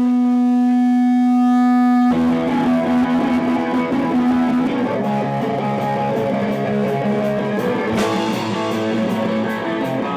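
Live rock band on distorted electric guitar: a single note held and ringing steadily, then about two seconds in the full band comes in with loud, dense strummed chords, and there is a sharp hit near the eight-second mark.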